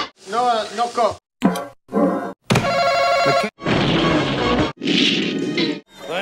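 Soundtrack snatches from a rapid run of about six one-second clips of 1970s TV cartoons and puppet shows, each cut off abruptly with a short gap before the next. They mix character voices, music and a held pitched note about halfway through.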